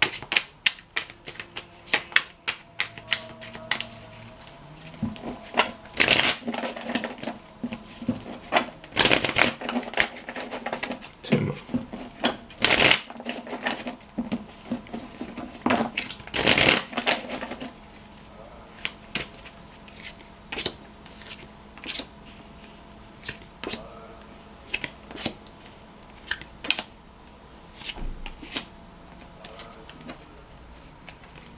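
A tarot deck being shuffled by hand: a long run of papery clicks and riffles, with a few louder shuffling bursts in the first half and sparser, quieter clicks later on.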